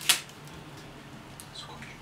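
Quiet handling of brown packing tape as fingers smooth it onto an aluminium part to press out the air, with a sharp click at the start and a few faint small ticks near the end.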